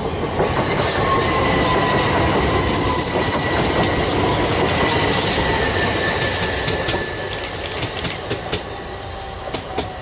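An electric multiple unit passing close through the station at speed: loud wheel-on-rail noise with a faint whine that slowly falls in pitch. It dies down after about seven seconds as the train draws away, with a run of sharp clicks over the rail joints near the end.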